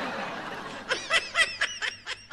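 Laughter: a breathy stretch, then a quick run of short laughs from about a second in.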